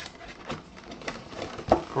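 Cardboard box flaps being handled and pulled open: scattered light taps and rustles, with one sharper knock near the end.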